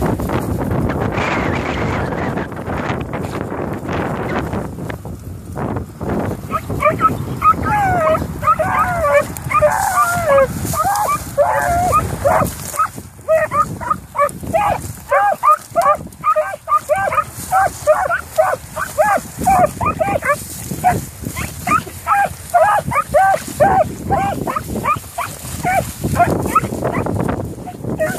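Beagle hounds giving tongue on a scent trail: rapid, short, pitched barks, several a second, starting about six seconds in and going on to the end. Before the baying, wind buffets the microphone and brush rustles.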